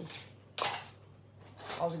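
A single short, sharp clatter about half a second in: hard craft supplies knocked or shifted on the work table while they are being searched through.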